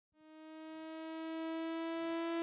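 A single sustained synthesized note, rich in overtones, fading in and swelling while holding one pitch: an intro logo sting.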